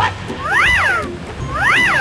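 Two identical meowing calls about a second apart, each rising and then falling in pitch, played as a comic cat sound effect. A short sharp upward chirp comes right at the start.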